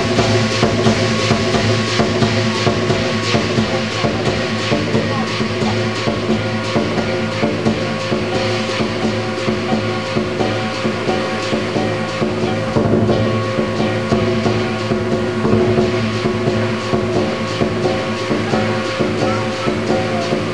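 Lion dance percussion: a drum, cymbals and gong playing continuously in a dense run of strikes over a steady ringing.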